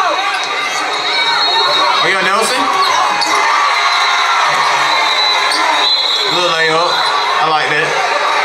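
Basketball game sound in a gymnasium: a ball bouncing and sneakers squeaking on the hardwood court, with voices from players and the crowd.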